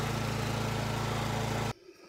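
A 4 gallon-per-minute pressure washer's engine running steadily with a low, even hum, no spray in the air. It cuts off suddenly near the end.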